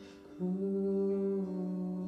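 Male voice singing a long, wordless held note that starts about half a second in, over an acoustic guitar.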